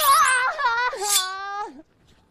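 A woman wailing in dismay: two drawn-out cries that slide downward in pitch and stop just before the end. A brief high whoosh opens it.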